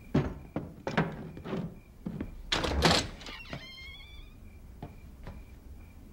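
A bedroom door being worked open: several heavy knocks and thuds, a louder rattling bang about two and a half seconds in, then a short hinge creak. Crickets chirp faintly throughout.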